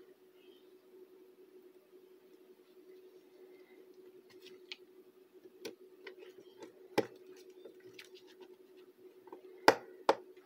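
Small clicks and taps of wire ends and a small screwdriver being worked at a timer relay module's screw terminals, over a steady low hum. Two sharper clicks come about seven seconds in and just before the end, the second the loudest.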